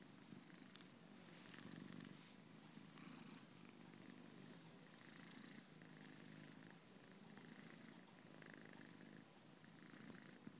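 A domestic cat purring steadily and faintly, close up, as it is stroked and massaged.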